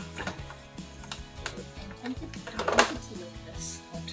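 Background music over a stand mixer running, its beater working flour into creamed butter.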